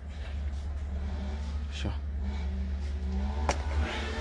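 A steady low rumble runs throughout, with faint voices in the background and two sharp clicks, one about two seconds in and one near the end.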